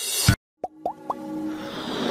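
Animated-intro sound effects: a sweep that cuts off abruptly about a third of a second in, then three quick rising bloops, then a hiss that swells steadily toward the end.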